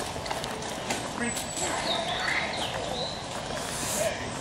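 Short high bird chirps over steady outdoor background noise, with faint voices underneath.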